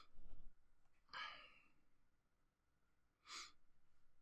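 Near silence with a few faint breaths: a sigh about a second in and a short exhale near the end.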